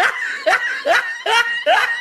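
Laughter: a quick run of about five short, high-pitched ha-ha pulses.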